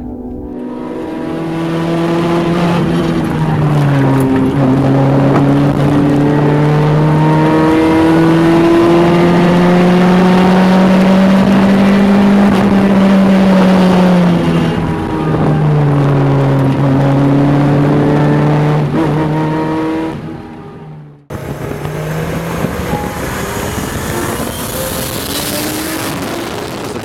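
Toyota AE86 Corolla GT-S's 16-valve twin-cam four-cylinder, heard from inside the cabin. It is held at high revs, and the pitch rises and falls back several times as the car is driven hard. The sound cuts off abruptly near the end, followed by a quieter, different car sound.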